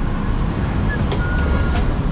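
Steady low rumble of vehicle and street noise, with a faint short beep a little over a second in.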